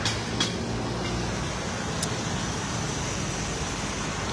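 Steady low vehicle rumble, with two faint clicks, about half a second and two seconds in.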